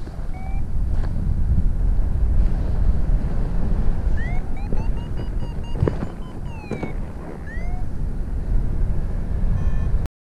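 Wind buffeting the microphone of a paraglider's camera in flight just after launch, a loud steady low rumble that lifts soon after the start. Several short chirps that rise and fall in pitch sound over it at the start and again in the middle, with a few sharp clicks.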